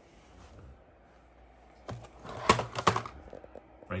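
A cardboard fan box being picked up and handled: a quick cluster of sharp clicks and taps about two seconds in, lasting about a second.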